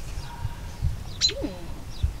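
A short, thoughtful hummed "hmm" from a person about a second and a half in, over a low, uneven rumble on the microphone.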